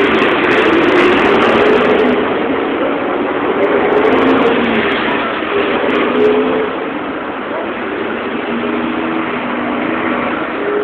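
Steady, fairly loud city street noise: a constant wash of passing traffic with pedestrians' voices mixed in.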